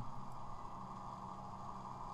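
Faint steady low hum with light hiss: the background of the recording between the narration, with no keyboard or mouse clicks.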